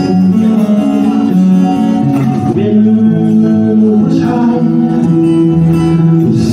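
Live band music: acoustic and electric guitars playing a slow song in held chords, with a singing voice.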